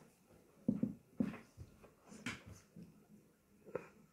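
Several short vocal sounds from a boy reacting to a sour apple Toxic Waste candy, coming in three groups: one about a second in, one halfway through, and one near the end.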